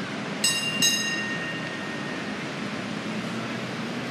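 A small metal bell rings twice in quick succession, the second strike a third of a second after the first, each ring fading over about a second.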